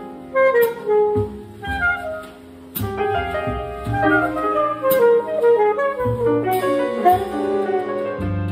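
Jazz quartet playing a slow ballad: a saxophone carries the melody over piano chords and upright bass, with occasional drum cymbal strokes.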